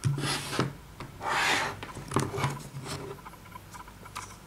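Pistols and a hand sliding across a wooden tabletop: two rough scrapes, the second longer, followed by a few light clicks of the guns being handled.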